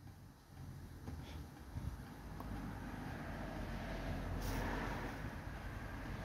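A low rumbling noise, like a passing vehicle, that builds over a few seconds and eases off near the end.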